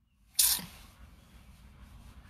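A short, sharp hiss about half a second in, after a moment of dead silence, fading quickly into a faint steady background hiss.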